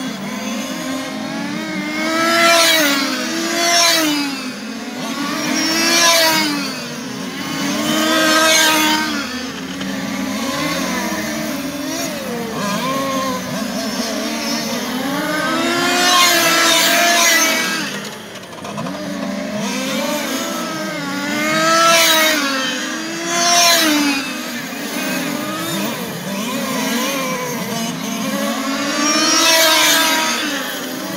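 Several radio-controlled touring cars with small two-stroke engines racing together, their engines rising and falling in pitch as they accelerate, lift off and rev again. The sound swells as cars pass close by, every few seconds.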